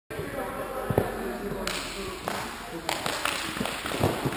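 Inline speed skates rolling and striding on a hard rink floor, with a single knock about a second in and a rhythmic push of noise roughly every half second or so from about two seconds in.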